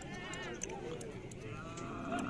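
Background voices of a busy livestock market, with a short wavering bleat-like animal call near the start.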